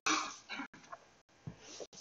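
A pause in a woman's spoken prayer: a breath drawn right at the start, then faint room noise. The sound cuts out completely for an instant a few times, the mark of a live sound system with problems.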